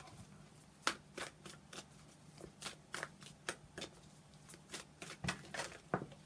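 A tarot deck being shuffled by hand: a run of irregular card snaps and flicks, a few a second, with a sharper snap about a second in and another near the end.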